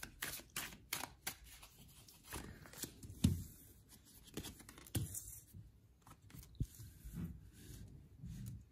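A deck of tarot cards shuffled overhand in a quick run of clicks. Then cards are dealt onto a wooden tabletop with three soft thumps, the loudest about three seconds in, and a light slide of fingers over the cards.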